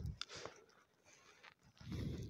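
A short, quiet pause between spoken phrases. Faint breath and mouth noises from the speaker come right at the start and again near the end, with very low room tone in between.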